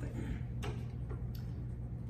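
Steady low room hum with a few faint, scattered clicks in a pause between speech.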